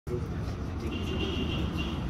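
Handheld breath-alcohol tester giving a steady high electronic tone from about a second in, over a low steady rumble and background voices.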